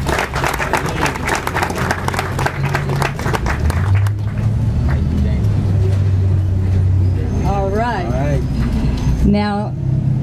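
Crowd applauding for about four seconds, then dying away into a low, steady rumble, with a brief voice about eight seconds in.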